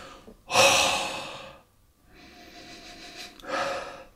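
A man breathing and sniffing at a whisky tasting glass while nosing the spirit. A loud breath starts suddenly about half a second in and fades over a second. It is followed by a slow, gradually building inhale through the nose and a shorter, louder breath near the end.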